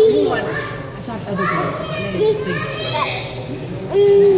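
Young children chattering and calling out, several high voices overlapping.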